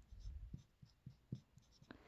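Marker writing on a whiteboard: a series of short, faint strokes.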